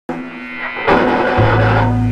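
Live rock band with electric guitars and bass guitar playing. It starts suddenly on a ringing chord, a louder, fuller chord comes in about a second in, and a low bass note joins soon after.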